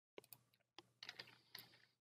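Faint keystrokes on a computer keyboard: a handful of scattered key clicks as a line of code is edited.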